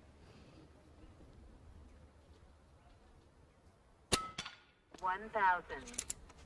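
A single quiet, silenced shot from an Evanix Rex Ibex .22 PCP air rifle about four seconds in, followed a split second later by a second sharp strike with a short ring, the heavy pellet hitting the gong downrange.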